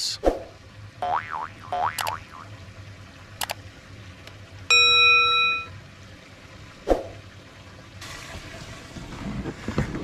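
Subscribe-button animation sound effects: a few springy, boing-like pitch swoops, then a bright bell-like ding about five seconds in, lasting about a second, and a sharp click shortly after.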